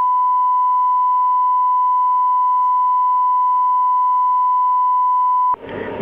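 Steady broadcast line-up tone, a single pure high-pitched note sent as the holding signal on the Senate Chamber feed while proceedings are paused. It cuts off abruptly about five and a half seconds in, and a recorded voice announcement starts.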